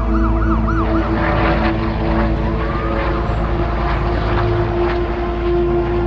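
An emergency-vehicle siren yelping in quick rise-and-fall sweeps for about the first second, then one slower wail, over a steady ambient music drone and a haze of city noise.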